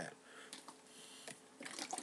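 A plastic bottle of thick Sriracha chili sauce being shaken, the sauce sloshing inside in quick irregular strokes that start near the end after a quiet stretch.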